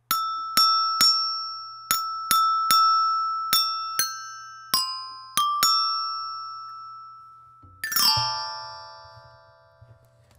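Metal-bar bell set (a glockenspiel) struck with the end of an XLR cable in place of a mallet: about eleven single ringing notes, mostly the same pitch repeated with a few higher and lower ones, then a quick sweep across many bars about eight seconds in that rings out to the end.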